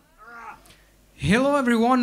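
A man's voice through the stage microphone and PA: a brief quiet utterance, then, about a second in, a loud drawn-out word held on one pitch, opening a spoken greeting to the audience.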